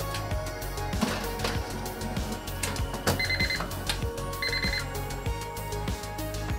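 Background music, with two short trilling electronic rings a little over a second apart about halfway through.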